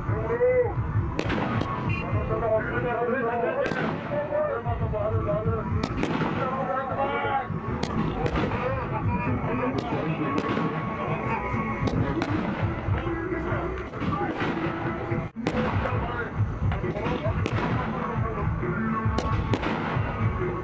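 A dense mix of voices and music, with many short sharp bangs at irregular intervals, about one or two a second.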